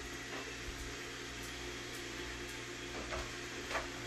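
Steady low machine hum with a whir, from a Roomba robot vacuum running in the room, with a few faint scratches of a pen writing on a book page near the end.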